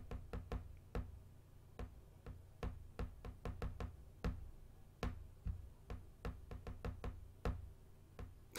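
Faint, irregular light clicks and taps, about twenty of them, two or three a second, close to the microphone at a desk.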